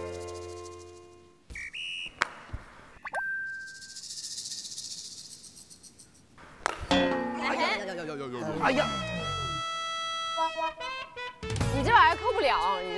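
Comedy sound effects and music edited onto a variety show: short pitched tones and a quick glide, a high buzzing hiss in the middle, then a cascade of falling tones about seven seconds in, followed by a held chord.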